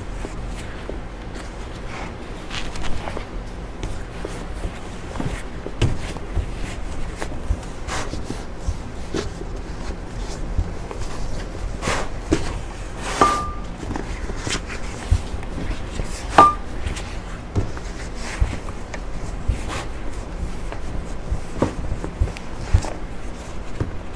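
Dough being kneaded by hand inside a silicone kneading bag on a wooden cutting board: irregular dull thumps and rubbing as the bag is pressed, folded and set down, with two brief squeaks near the middle.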